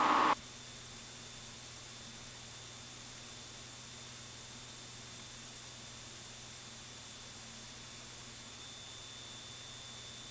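Steady static hiss with a faint low hum on the aircraft's radio and intercom audio. A louder stretch of noise cuts off about a third of a second in.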